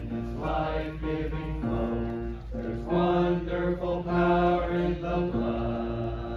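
A small church group singing a hymn together, holding long, steady notes that move slowly from one pitch to the next.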